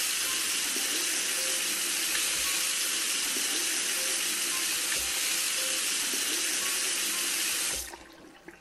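A tap running into a bathroom sink: a steady rush of water that stops abruptly just before the end.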